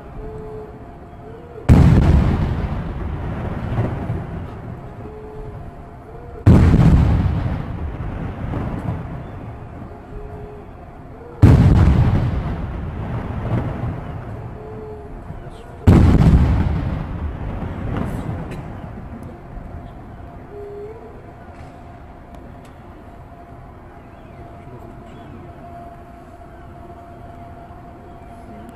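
Ceremonial gun salute: four loud shots about five seconds apart, each echoing away over a few seconds.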